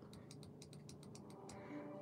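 Faint, irregular light clicks and taps of fingers on a black Apple Magic Trackpad, about a dozen in two seconds.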